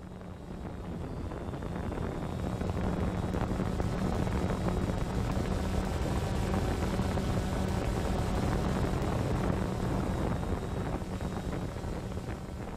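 Multirotor drone's propellers running with a steady hum, fading in over the first couple of seconds.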